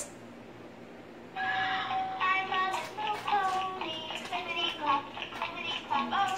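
Electronic tune played by a plush ride-on horse toy, set off by pressing its ears; the song starts suddenly about a second and a half in, with short steady notes stepping up and down in pitch.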